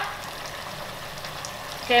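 Chicken thighs sizzling steadily in a small pan of red curry paste and coconut milk as they sear.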